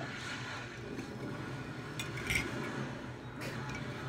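Light clinks of a spoon or egg against cups of egg dye, the sharpest about two seconds in and another a little over three seconds in, over a steady low hum.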